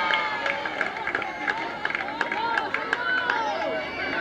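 Many voices of softball spectators and players shouting and cheering over one another during a play, with scattered sharp claps.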